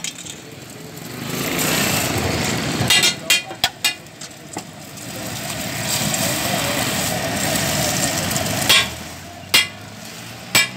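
Metal spatula knocking and scraping on a flat steel griddle: a quick run of taps about three to four seconds in, then two more near the end. Under it is a continuous rushing noise that swells twice.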